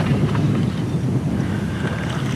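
Steady rushing of wind on the microphone, with no distinct strokes or tones.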